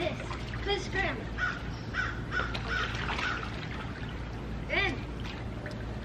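A crow cawing a few times, short harsh calls about a second in and again near five seconds, over the faint lapping of pool water.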